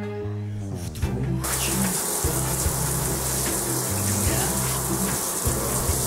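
Toilet flushing: a loud rush of water that starts abruptly about a second and a half in and stops near the end, over background music with a steady bass line.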